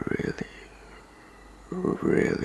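A man's soft, low voice making wordless murmuring and whispering sounds in the first half-second, then again near the end.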